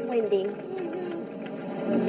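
Several people's voices overlapping, exclaiming and chattering without clear words.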